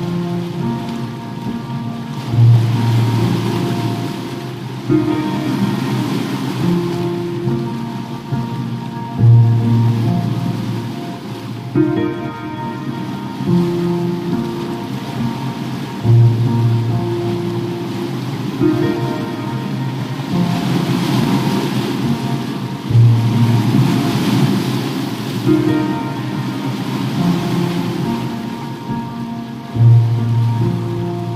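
Slow, calm piano music with a deep bass note about every seven seconds, laid over a mix of ocean waves surging and receding and a crackling fireplace fire.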